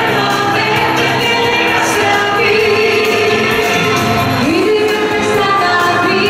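Live song sung by a male and female vocal duo into microphones, over full instrumental accompaniment with a steady beat.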